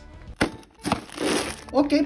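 A sharp click, then about a second of plastic crinkling from sealed bags of Lego pieces being handled.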